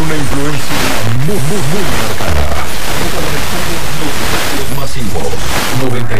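Distant Mexican FM station, 95.3 XHLPZ, received by sporadic-E skip: a Spanish-language voice comes through heavy static hiss. The voice is plainest about a second in and again near the end.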